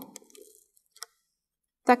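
A few faint clicks from fingers handling a stiff, glue-hardened crochet-thread ball and a pin, with one sharper click about a second in. The balloon has not yet burst.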